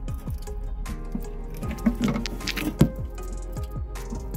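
Music with a steady beat, and partway through a short run of wet squishing and clicking, with two sharper snaps, as a bearded dragon bites into and chews a soft feeder bug.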